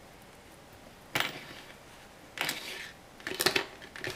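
Hands handling yarn and a needle at a cloth doll's head: three brief rustles, the last a cluster of small clicks near the end.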